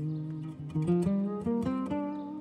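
Background music: a plucked acoustic guitar playing a slow melody of single notes that change every few tenths of a second.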